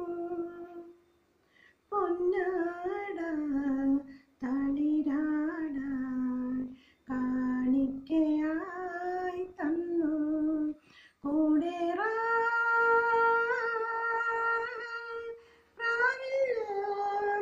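A woman singing solo without accompaniment, in phrases broken by short pauses for breath, ending on a long held note near the end.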